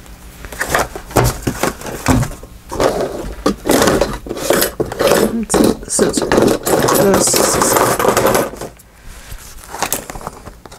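Paper and card stock rustling and crinkling close to the microphone as a glued paper journal pocket is handled, with many light clicks and taps. The rustling is densest through the middle and drops away shortly before the end.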